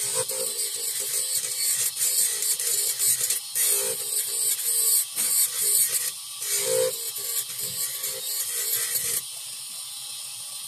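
Dental laboratory handpiece with a bur spinning fast, grinding a plastic jacket crown held against it. The rough cutting noise rises and falls as the crown is pressed on and eased off, and drops to the quieter steady run of the motor about nine seconds in.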